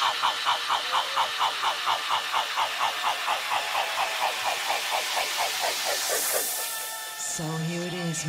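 Tech-house breakdown in a live DJ mix with no kick drum: a synth chord pulses about four times a second under a white-noise sweep that climbs and peaks about six seconds in, then fades. Near the end a held low synth or vocal note comes in.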